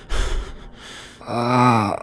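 A man's voice gasping in pain: a short sharp breath just after the start, then a loud, low, strained vocal gasp from about 1.3 s that ends abruptly at the close.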